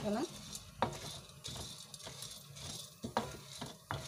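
Chana dal (split chickpeas) being roasted and stirred on a flat griddle: a steady sizzle with the grains scraping over the pan, and a few sharp knocks of the stirring tool against the pan.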